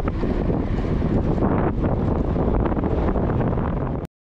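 Steady wind buffeting the microphone of a camera on a moving bicycle, a continuous low rushing noise.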